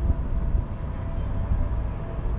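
A vehicle idling while stopped: a low, steady rumble with a faint hum over it.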